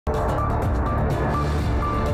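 News bulletin opening theme music, starting abruptly with a deep low pulse and a short high beep repeating about twice a second.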